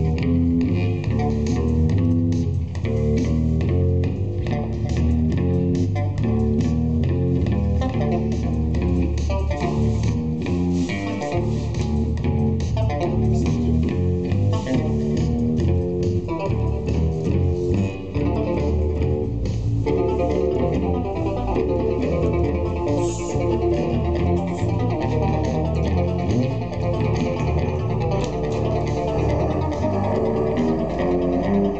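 Live rock band playing loudly, with bass and guitar. The arrangement changes about two-thirds of the way through.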